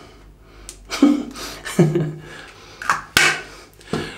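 A man chuckling: three short breathy bursts of laughter about a second apart, the last the loudest, with a sharp click just after it.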